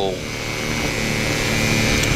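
Cors-Air Black Bull single-cylinder two-stroke engine driving the pusher propeller of a flexwing microlight trike, running steadily under power in flight.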